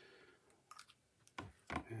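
A few faint clicks and a soft knock of hands working a small cast figure head out of a silicone mould; the knock, about a second and a half in, is the loudest.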